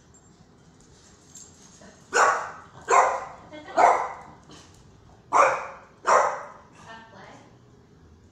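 A dog barking five times in short, loud barks spaced under a second apart, with a couple of fainter yips after, while playing with other dogs.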